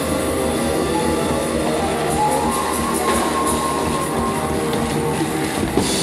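A large live ensemble with flute, trombone, double bass and tabla playing a dense, steady passage of many sustained notes at once, with no clear beat.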